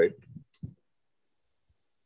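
A man's voice ends a word at the start, followed by two or three faint short clicks about half a second in, then dead silence.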